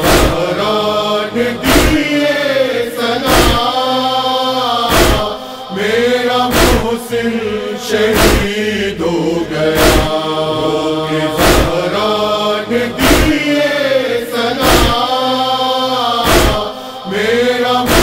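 A wordless chanted vocal chorus of a noha, sung over sharp rhythmic chest-beating (matam) strikes, about one every second and a half, that keep the beat.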